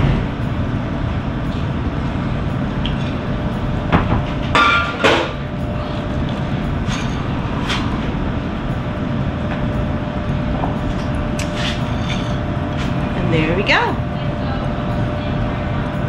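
Bottles and glassware being handled behind a bar: scattered knocks and clinks, a cluster of them about four to five seconds in and a few more later. Underneath is a steady room noise with a faint hum.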